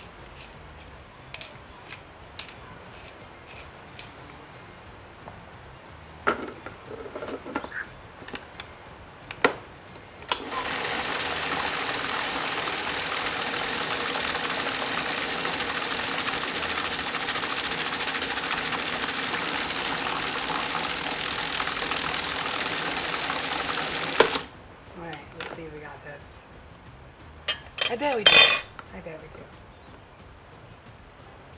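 Pepper mill grinding with a run of sharp clicks, then a food processor motor running steadily for about fourteen seconds as it blends hummus to a smooth, dippable consistency, stopping suddenly with a clunk.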